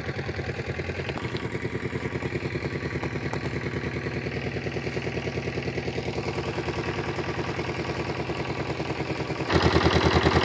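Stationary single-cylinder diesel engine driving a water pump, running steadily with an even, rapid beat; it gets suddenly louder near the end.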